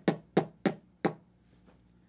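A quick run of sharp knocks, about three a second, the last one about a second in.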